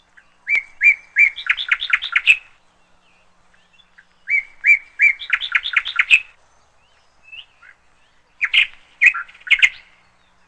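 A songbird singing. Two matching phrases, each three even notes and then a quick run of notes, come in the first half. A shorter group of notes follows near the end.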